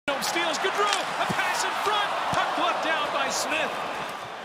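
Ice hockey game sound in an arena: many crowd voices shouting and calling out at once, with sharp knocks and scrapes of sticks, puck and skates from the play at the net.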